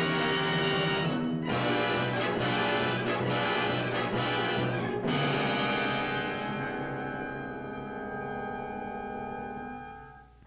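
Orchestral film score with brass, moving busily until about five seconds in, then settling into held chords that fade away near the end.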